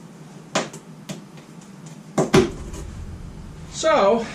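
A few sharp clicks, then a louder knock about two seconds in, as tools or parts are handled in a garage. A short vocal sound comes right at the end.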